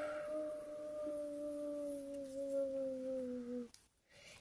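A person's voice making a long, wavering 'oooo' ghost noise, sinking slowly in pitch and stopping near the end.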